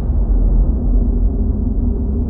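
Deep, loud cinematic rumble with faint held tones above it, the sustained tail of an outro sound-design sting.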